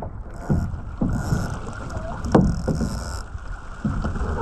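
Waves slapping and splashing against the hull of a small sailing dinghy, several sharp strikes with hissing spray, the loudest about two and a half seconds in, over a steady rumble of wind on the microphone.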